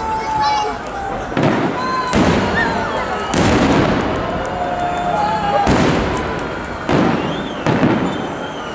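Aerial fireworks shells bursting overhead in a public fireworks salute, about six deep booms spread over the eight seconds, the loudest a little past the middle.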